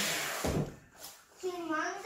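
A large cardboard sheet being handled and set down on a foam floor mat: a short rushing rustle followed by a dull thump about half a second in. A child's voice follows briefly near the end.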